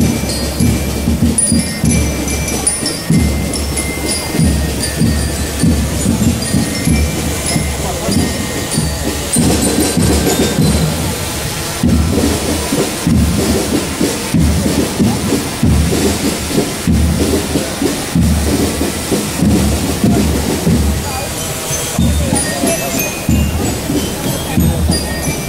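Outdoor parade music with short, bell-like ringing notes, heard over a loud, uneven low rumble on the microphone.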